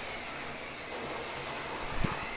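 Steady background hiss with a faint high hum and no distinct events.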